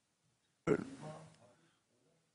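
A person's short vocal sound, with no words made out: it starts abruptly about two-thirds of a second in and fades within a second.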